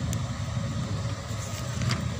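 Steady low background rumble, with a workbook page being turned by hand and a short paper rustle or click near the end.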